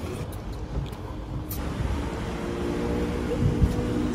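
Motor vehicle engine rumble that grows louder, with a steady engine hum setting in about halfway through.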